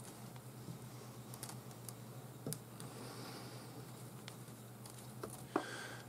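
Faint, scattered soft clicks and a brief rustle of 10 mm synthetic three-strand rope being handled by fingers, as one strand is unlaid and the opposite strand is laid into its groove.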